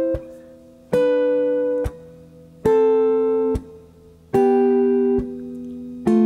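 Hollow-body electric guitar playing a slow descending run of sixths: two-note double-stops, each picked sharply and left ringing for about a second before being damped, stepping down in pitch about every 1.7 s.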